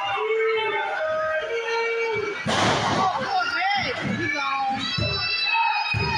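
Wrestling crowd in a hall shouting and calling out in overlapping voices, with a sudden loud burst of noise about two and a half seconds in.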